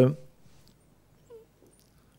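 A man's drawn-out hesitation 'uh' trails off in the first moments, followed by a pause of near silence with one faint, brief sound a little past halfway.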